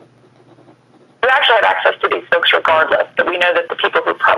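A person speaking over the webinar's phone-quality audio line. The talk starts about a second in, after a short pause that holds only a faint low hum.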